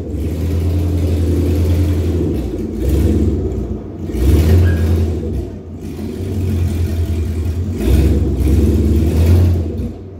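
Squarebody Chevrolet truck's engine revving in repeated surges as the truck is driven up onto a trailer, easing off between pushes.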